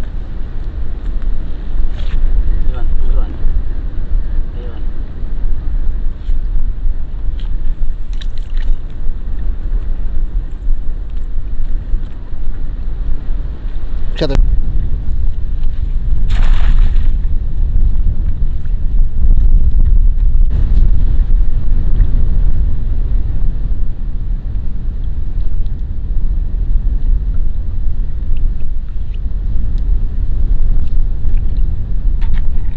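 Wind buffeting the microphone, a steady low rumble throughout. About halfway, a thrown cast net lands on the river with a brief splash.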